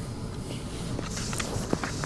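Sheets of paper being handled and rustled at a wooden lectern, with a few light clicks and knocks in the second half, over a steady low room hum.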